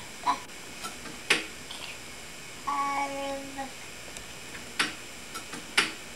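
A baby vocalizing: one held, steady-pitched "ah" about three seconds in, with a brief sound just before it at the start. Between the vocal sounds come a few sharp knocks, the loudest just over a second in and near the end.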